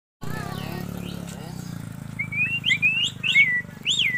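Asian pied starling (jalak suren) whistling a short run of about five clear, upslurred and downslurred notes in the second half, over a steady low hum.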